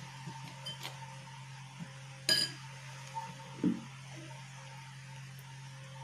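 A metal spoon clinks once against a glass bowl of gram flour about two seconds in, followed by a softer knock a little later, over a steady low hum.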